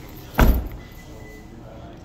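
Rear liftgate of a 2024 Subaru Crosstrek being pulled shut, with a single heavy thud as it latches about half a second in.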